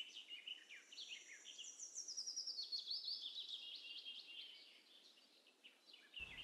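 Birds chirping faintly, many short high calls overlapping one another, dying away about five seconds in.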